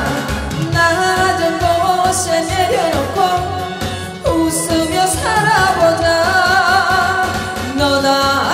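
A woman singing a Korean trot song live into a microphone over band backing music.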